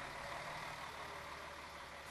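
Mercedes-Benz touring coach's diesel engine running low and steady as the bus pulls away, faint under a haze of outdoor noise.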